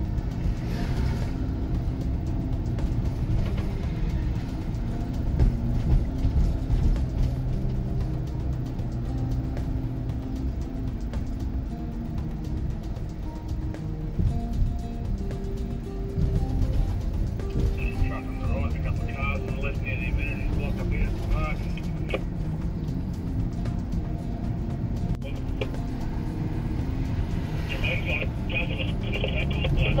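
Steady engine and road drone inside a moving escort car, with background music over it. Two brief stretches of two-way radio talk come in, one near the middle and one near the end.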